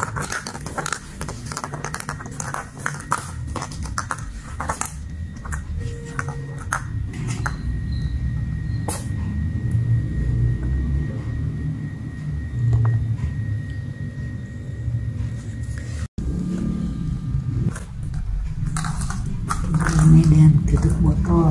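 Light plastic knocks and scrapes as a kitten bats a plastic cup-like cap across cardboard and a tiled floor. The knocks come in a quick irregular run that thins out after about nine seconds, over a steady low rumble.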